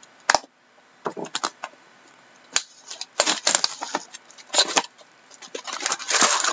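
Plastic shrink-wrap on a cardboard hockey card box being cut and peeled off, crinkling in irregular short bursts with a few sharp clicks. Near the end the handling gets busier as the wrap comes away and the box lid is opened.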